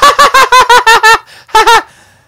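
A man's high-pitched falsetto laugh, a rapid run of short 'heh' syllables about eight a second, breaking off about a second in, with two more near the end. It is a put-on, creepy Pennywise-style cackle.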